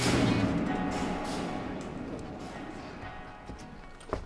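Rock band's final chord struck together with a cymbal crash at the end of the song, then ringing out and fading away over a few seconds.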